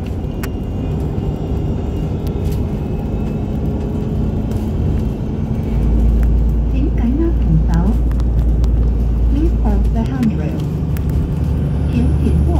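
Bus engine and road noise heard from inside the passenger cabin while the bus drives along, a steady drone that deepens and grows louder about halfway through.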